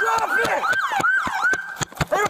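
Police car siren in a fast yelp, rising and falling about four times a second, with the knocks of footfalls as the body-camera wearer runs.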